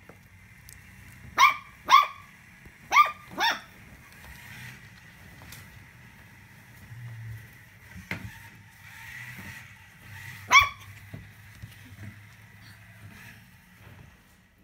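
Cocker spaniel puppy barking: a quick run of four short, high-pitched barks in the first few seconds, then one more about ten seconds in.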